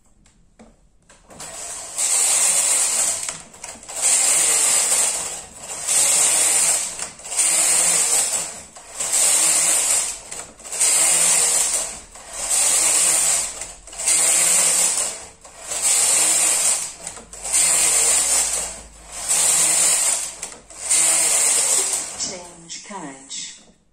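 Brother KH930 knitting machine carriage, coupled to the ribber carriage, being pushed back and forth across the needle beds. About a dozen passes, each about a second and a half of rattling mechanical swish with a short pause at each turn, starting a couple of seconds in.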